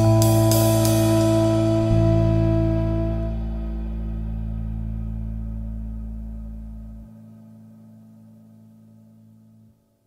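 Instrumental lounge jazz ending on a held final chord: a few cymbal strokes in the first second, then the chord rings out and fades, the bass dropping out about seven seconds in and the last of it stopping just before the end.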